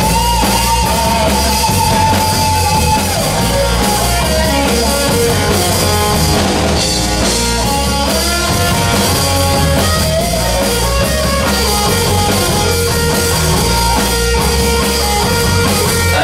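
Live rock band playing loudly: drum kit and bass under long, sliding electric guitar melody lines.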